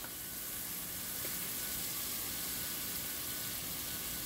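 Curry paste of garlic, curry powder and turmeric sautéing slowly in hot oil in a pot: a low, steady sizzle.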